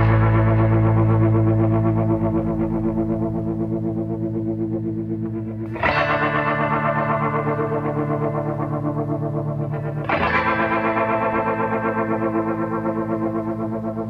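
Slow ambient meditation music: held, effects-treated chords with a quick, even pulsing shimmer, each fading slowly. A new chord sounds about 6 seconds in and another about 10 seconds in.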